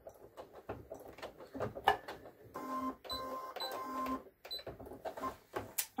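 Computerized sewing machine's motor whirring in two short runs about midway, with sharp clicks and rustles from the presser foot and the denim being handled around them.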